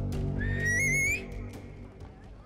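A man's loud finger whistle: one note starting about half a second in, rising in pitch with a waver near its top, and cut off after about three-quarters of a second. Soft background score runs underneath.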